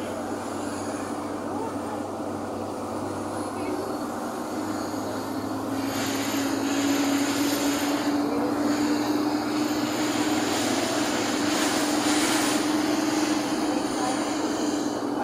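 Engine and road noise heard inside the cabin of a moving passenger vehicle: a steady drone with a low hum that rises slightly in pitch and grows louder about six seconds in as the vehicle picks up speed.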